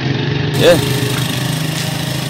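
A small engine running steadily in the background as an even low hum, with a short vocal sound rising and falling about half a second in.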